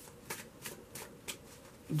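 Quiet handling of a tarot deck: about four short, crisp flicks of cards being shuffled in the hands.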